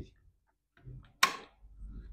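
A single sharp click about a second and a quarter in, from a Toshiba pressure rice cooker's detachable inner lid being handled.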